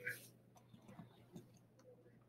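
Near silence, with a few faint ticks of a pen drawing on sketchbook paper.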